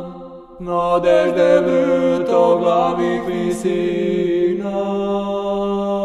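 Orthodox church chant. The voices' held drone breaks off briefly at the start, then the singing comes back in about half a second later with an ornamented, winding melody over the drone. Near the end it settles into a steady held chord.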